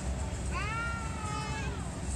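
Low steady running of a JCB mini excavator turned swing ride, with a high, drawn-out squeal about half a second in that rises, holds for over a second and falls away.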